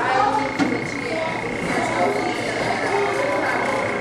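A steady high-pitched electronic whine starts about half a second in and holds, over faint background voices.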